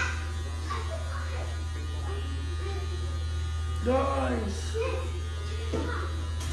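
Electric hair clippers running with a steady low hum. A short voice sounds briefly about four seconds in.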